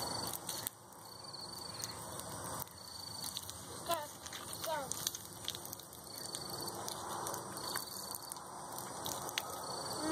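Insects chirping outdoors in short high trills, about one every second, over a faint low hiss. Two short falling calls sound about four and five seconds in.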